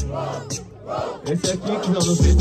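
A crowd of spectators shouting together in short repeated cries while the hip-hop beat drops out, the beat coming back in just after.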